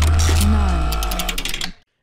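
Short transition sound effect: a heavy deep bass hit with a falling tone, overlaid by a fast run of mechanical clicks, cutting off abruptly a little under two seconds in.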